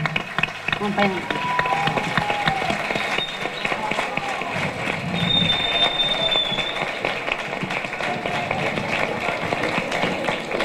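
Audience applauding, with crowd voices mixed in; the clapping is densest in the first few seconds and then carries on more thinly. A thin high tone sounds for about a second midway through.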